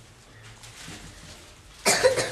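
A marker rubbing faintly on a whiteboard as words are written, then a sudden loud cough near the end.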